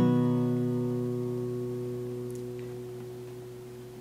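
Acoustic guitar with a capo on the fourth fret, a single strummed G-shape chord (sounding as B major) ringing out and slowly fading away.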